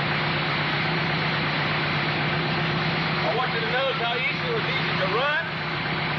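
Aluminium engine of a dune buggy running steadily, with a constant low hum and no revving; it is said to be running on gas from a water fuel cell. Faint voices join about halfway through.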